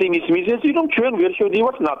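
Only speech: a voice talking without a break, sounding thin and narrow, as over a telephone line.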